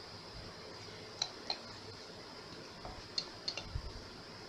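A few faint, light clicks and taps from plastic resin mixing cups and a wooden stir stick being handled, with a soft low thump near the end.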